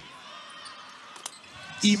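Low basketball-arena crowd murmur during live play, with one sharp knock of the ball a little past the middle.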